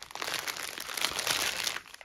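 Clear plastic sleeve holding bags of diamond painting drills crinkling continuously as it is picked up and handled. The crinkling stops just before the end.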